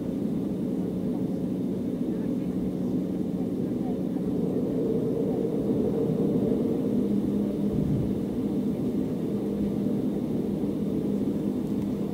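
Cabin noise of an Embraer 195 taxiing, its GE CF34 turbofans at low power: a steady hum with held low tones. A brief deeper rumble comes about two-thirds of the way through.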